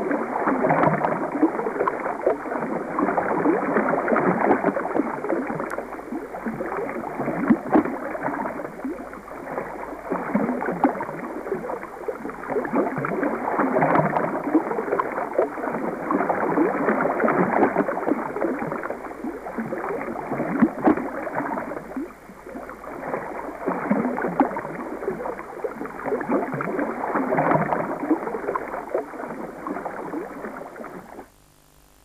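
Rushing, splashing stream water with a dense crackle of small splashes and gurgles, swelling and easing every few seconds.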